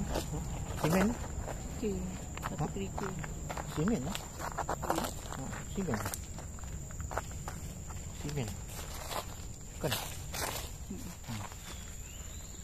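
Footsteps crunching over dry leaf litter, twigs and gravel on a forest floor, in a slow, uneven walk.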